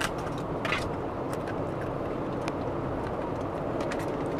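Steady road noise inside a moving car's cabin, with a few short, faint crisp clicks over it.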